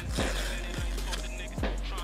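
A sticker being peeled off the brim of a fitted cap close to the microphone: a scratchy peeling noise with a few sharp clicks. Background music plays underneath.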